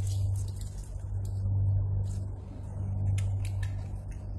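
A steady low hum throughout, with light crackling and rustling at a few moments as crisp baked pastry cones are handled.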